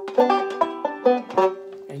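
Five-string banjo picked in a quick run of single notes, a pentatonic lick, each note plucked sharply and ringing, with one note held on underneath.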